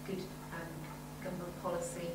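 A person talking, too indistinct for the words to be made out, over a steady low electrical hum.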